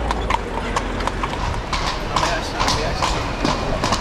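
Hooves of a carriage horse clip-clopping at a steady walk, about four strikes a second, pulling the carriage along a paved street.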